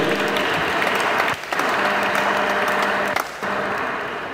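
An audience applauding: a steady patter of many hands clapping that eases briefly twice.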